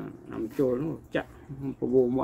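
Speech only: a man talking.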